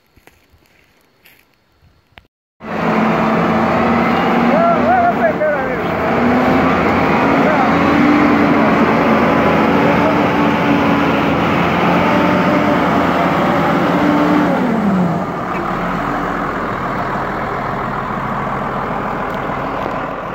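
Motor grader's diesel engine running loud and close, starting abruptly about two and a half seconds in after a quiet stretch. The engine note rises a little about six seconds in and drops back near fifteen seconds, after which it runs somewhat quieter. Faint voices can be heard under it.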